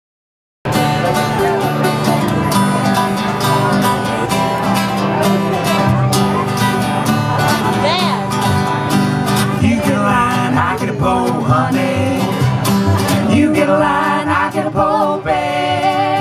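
Live acoustic roots band starting abruptly about half a second in: strummed acoustic guitar over upright bass in a quick country-blues rhythm. A voice joins in over the instruments in the second half.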